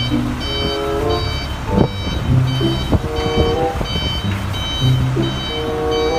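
A large box truck's reversing alarm beeping at one high pitch, about two beeps a second.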